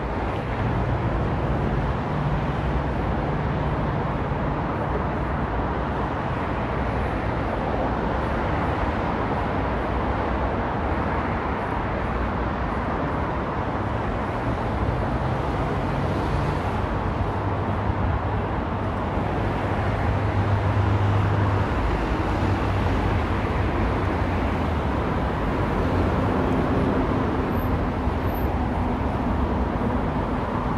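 Steady city street traffic noise from a multi-lane avenue, with the low engine hum of passing vehicles rising and falling; one hum is louder about twenty seconds in.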